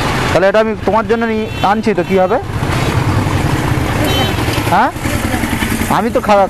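Roadside traffic with a motor vehicle engine running under it; a voice speaks indistinctly for the first couple of seconds, and a short rising tone comes near the end.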